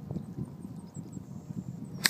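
Gusty wind buffeting the microphone in an uneven low rumble, with a few faint, short high chirps over it.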